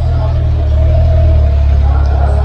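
Hyundai SUV driving slowly past close by, its engine a loud, steady low rumble.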